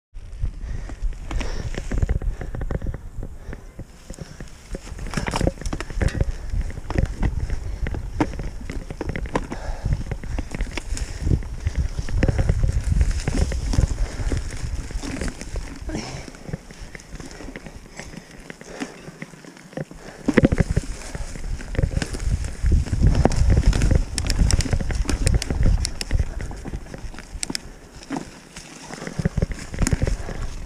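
Mountain bike ridden over a dirt trail: a continuous low rumble with irregular clicks, knocks and rattles from the tyres and bike over rough ground. It eases off briefly twice, about two-thirds of the way through and again near the end.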